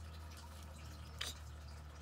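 Quiet room with a low, steady hum and a single faint click a little over a second in.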